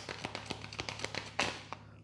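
A deck of tarot cards being shuffled by hand: a quick, uneven run of light card clicks and flicks, with one louder burst about one and a half seconds in, over a faint steady hum.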